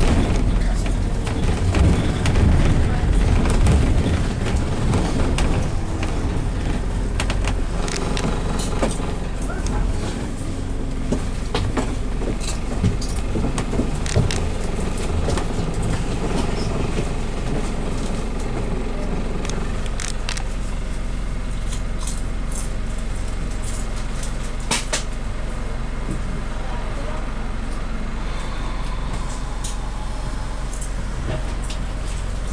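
Inside a moving double-decker bus: the engine running under steady road noise, louder for the first few seconds and then even, with scattered sharp rattles and clicks from the bodywork.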